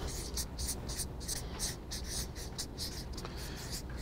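Marker pen writing on flip-chart paper: a run of short, high scratchy strokes, about four a second, that stops near the end.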